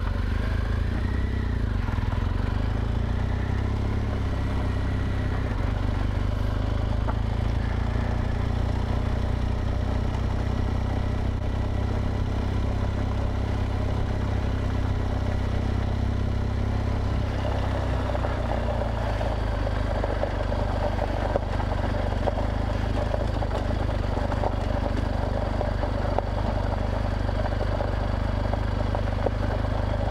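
BMW R1200 GSA's boxer-twin engine running steadily under way, with tyres rolling over a gravel road.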